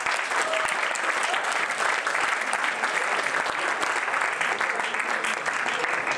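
Audience applauding a prize winner, a dense, steady clapping that keeps up without a break.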